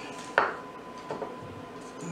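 Small glass prep bowls being handled on a kitchen counter: one sharp clink about half a second in, then a lighter knock about a second later.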